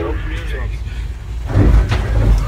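Locomotive cab sound of a train ploughing through snow-laden fallen trees: a steady low rumble of the moving locomotive, with branches and snow striking the nose and windshield. The loudest hit comes about one and a half seconds in.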